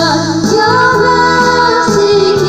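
Two women singing a gospel song into microphones, amplified through a PA, over a steady instrumental backing.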